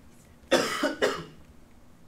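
A man coughing: a short fit of coughs starting about half a second in and over in under a second.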